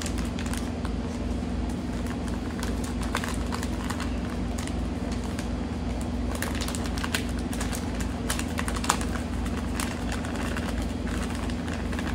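Sausage seasoning shaken from a bag into a bowl of ground venison: scattered small ticks and rustles of the bag and falling granules, over a steady low background hum.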